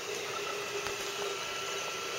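3D printer running mid-print, its print head moving over the part: a steady mechanical whirr with a thin high whine that sets in just after the start.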